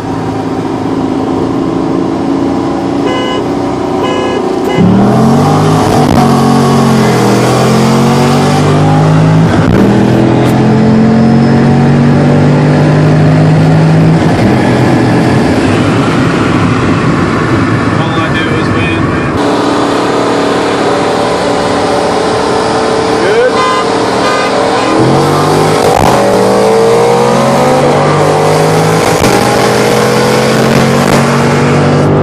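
V8 car engine heard from inside the cabin, running steadily, then accelerating hard about five seconds in, its revs climbing and dropping back at each gear change. A second hard pull comes near the end.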